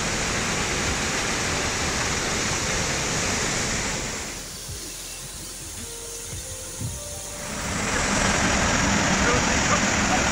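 Waterfall and rocky stream rushing, a steady wash of water noise that drops quieter for a few seconds in the middle and then grows louder again.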